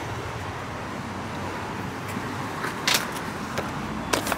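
Steady street background noise with a low hum from road traffic, and a sharp click about three seconds in.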